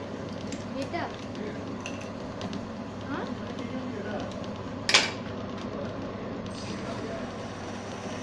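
Metal clinks and clicks as an ebonite pen blank is fitted into a small lathe's chuck and tightened with a chuck key, with one sharp metallic clack about five seconds in. A steady low hum runs underneath.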